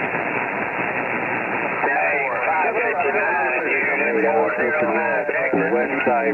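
CB radio receiver on 27.375 MHz: a station keys up, opening a steady, band-limited hiss of static. A distant operator's voice comes through under the static from about two seconds in.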